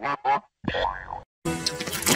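Chopped, heavily edited cartoon logo jingle audio: three short bursts of music-like sound effects with gliding pitches, cut apart by two brief dead silences.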